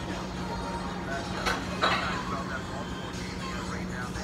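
Restaurant counter ambience: faint background voices and music over a steady low hum, with a couple of light knocks about halfway through.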